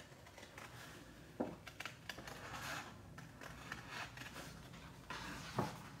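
Small scissors snipping through cardstock, a scattering of faint short snips with soft paper handling as the sheet is turned.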